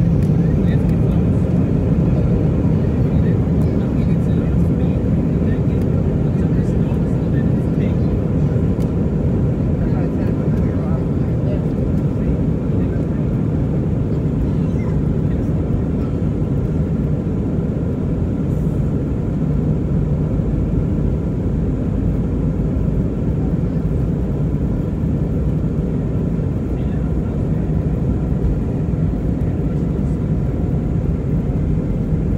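Cabin noise of an Airbus A320 on its takeoff roll, heard from a window seat: the loud, steady rumble of the jet engines at takeoff power, with the deep noise slightly strongest in the first few seconds.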